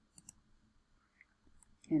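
Two quick computer-mouse clicks, a fraction of a second apart, as the on-screen macro button is pressed.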